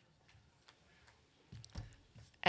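Near silence with a few faint scattered clicks, then a few low thumps in the last half second from a handheld microphone being handled.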